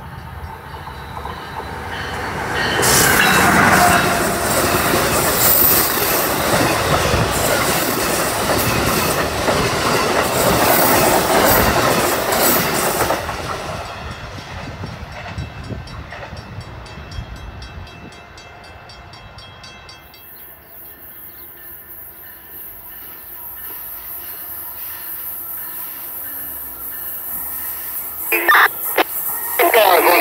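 An Amtrak train led by an ACS-64 electric locomotive passes through the station at speed: a loud rush of wheel and rail noise for about ten seconds, fading away as the train recedes. Near the end, an approaching Acela sounds its horn twice, a short blast and then a longer one.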